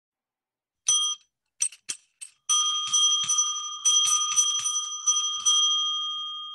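A small bell rung by hand: one ring about a second in, three short taps, then a fast run of strikes from about two and a half seconds that keeps ringing to the end.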